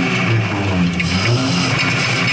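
Lada race car's engine heard from inside the cabin, driven hard with the revs rising and falling in steps, over a steady hiss.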